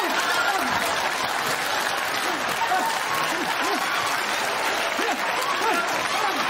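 Studio audience applauding, with scattered laughs and cries from the crowd through the applause.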